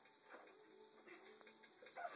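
Near silence, with a few faint soft bumps from a child moving on fabric couch cushions.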